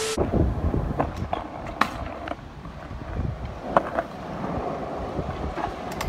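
Stunt scooter wheels rolling over a concrete skate park, with gusty wind on the microphone and a few sharp clacks.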